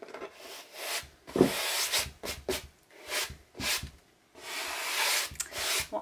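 Hands brushing and rubbing over a textured canvas and craft supplies: a series of scratchy swishes, each under a second, with a sharp one about a second and a half in and a longer one near the end.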